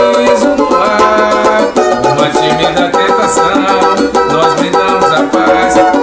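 Brazilian banjo-cavaquinho (four-string banjo) strummed steadily in a pagode rhythm, playing a chord progression in G, with a man singing along.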